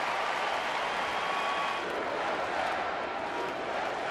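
Ballpark crowd: a steady murmur of many voices, with no single call or impact standing out.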